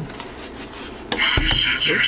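Soft handling of the plastic helmet, then, about a second in, a loud, tinny electronic sound from the Soundwave helmet's small built-in speaker starts, with a low knock on the helmet just after it.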